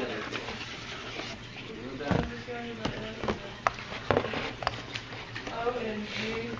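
Indistinct voices talking in the background, with several sharp clicks and taps from objects being handled, spread through the middle of the stretch.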